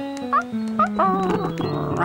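Light background music for a children's cartoon, with a few short, rising yips from a cartoon dog over it.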